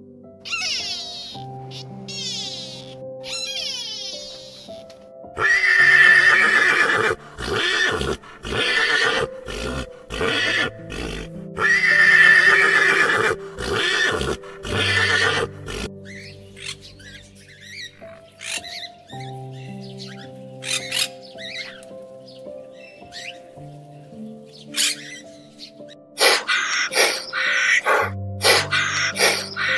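Soft piano music throughout, with a pony whinnying loudly over it twice, about six seconds apart, in the middle, and shorter animal calls near the start and the end.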